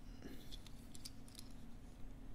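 Faint, scattered little clicks and ticks of a Majorette Peugeot 604 die-cast toy car being handled and turned over in the fingers.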